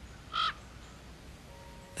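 A single brief animal call about a third of a second in, over faint background hiss.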